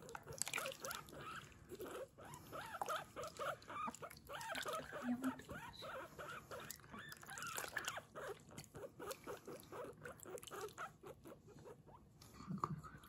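Guinea pig squeaking a quick, continuous string of short "puipui" calls while being bathed.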